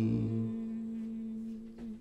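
A man's voice holding the last note of a sung Hebrew liturgical song, one long steady note that slowly fades away; a lower note underneath stops about half a second in.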